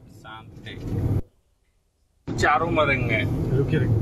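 Road and engine noise inside a BMW's cabin while driving, under passengers talking. The sound cuts out for about a second, then comes back louder.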